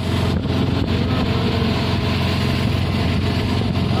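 Auto-rickshaw engine running steadily with road noise, heard from inside the open cabin as it drives along.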